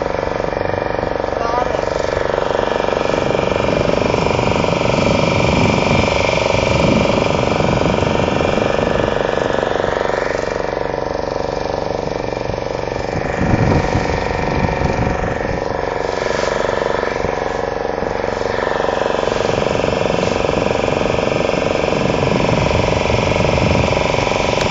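A small motor boat's engine running steadily while underway, a continuous hum over a rushing wash of wind and water that swells and eases a little now and then.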